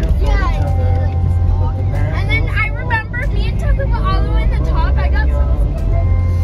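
Steady low rumble of a car driving, heard inside the cabin, under a voice and background music.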